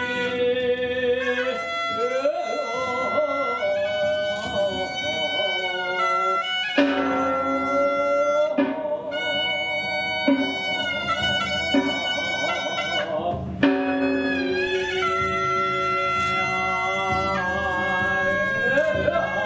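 Korean Buddhist ritual music accompanying a jakbeop butterfly dance: a wind instrument holds long notes that shift in steps, with a few sharp percussion strikes in the middle.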